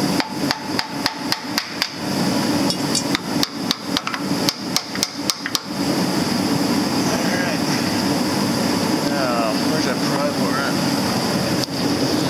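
Hand hammer tapping on the transmission of a John Deere 6200 tractor, in two quick runs of sharp blows, about four or five a second, while he works at a jammed spot near the synchronizers. After that only a steady background hum remains.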